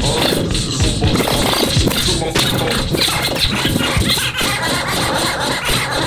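Hip hop beat playing with no rapping over it, with turntable scratching cut in.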